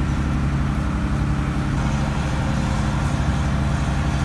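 A trawler's inboard engine and drivetrain running steadily underway at low cruising speed, a smooth low drone with a steady hiss over it; the freshly rebuilt Paragon marine transmission is running smoothly.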